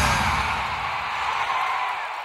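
Tail of a TV football programme's title jingle: the beat drops out and a noisy wash is left, fading out slowly.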